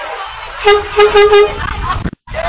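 A lorry horn sounding four short, quick toots in a row about half a second in, the loudest sound here, over a low rumble.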